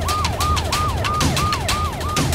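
Police vehicle siren sounding in a fast repeating cycle, about three a second: each cycle jumps up to a held high note and then slides down. A fast rhythmic ticking runs behind it.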